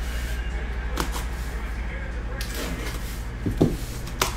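Cardboard case of sealed card boxes being handled and turned on a mat: a few short, light knocks and scrapes of cardboard over a steady low hum.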